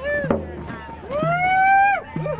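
Protesters chanting and calling out, with a drum hit keeping a beat under the voices. About halfway through, a high voice holds one long rising call.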